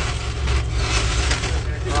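Car engine idling, heard from inside the cabin as a steady low rumble, with brief crackly rustling from a paper fast-food bag being handled.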